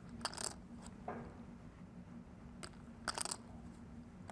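Poker chips clicking together in short clusters as a player handles them at the table, once just after the start and again around three seconds in, over a faint steady low hum.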